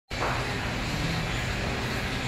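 Steady low background rumble with a hiss over it, cutting in abruptly as the recording starts.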